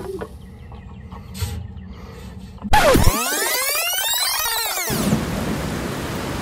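A sudden electronic sound effect about halfway through, a dense swirl of rising and falling pitch sweeps, gives way to the steady hiss of TV static.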